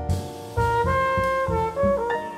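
Small jazz band playing: a trombone carries a melodic line of short held notes over drum kit and bass. It comes in after a brief dip at the start, about half a second in.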